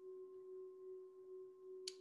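Faint steady hum of a few held, unwavering tones, one low and one higher, with a brief click about two seconds in.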